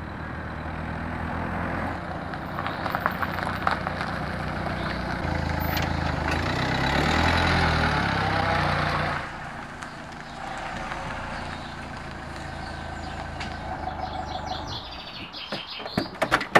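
Peugeot 206 hatchback engine running as the car drives up a gravel lane, with tyre noise on gravel and the engine note rising and falling as it passes close about halfway through. It then idles steadily and is switched off about a second before the end.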